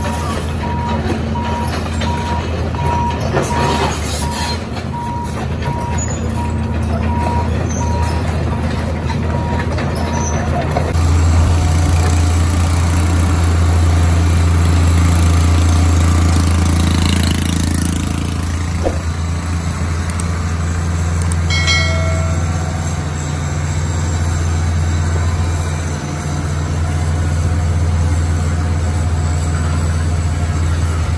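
Heavy diesel construction machinery running: a Caterpillar tracked excavator and a Dresser motor grader, with a steady low engine drone that gets louder from about eleven seconds in. For the first ten seconds a warning alarm beeps at an even pace, and a brief horn-like tone sounds a little past the middle.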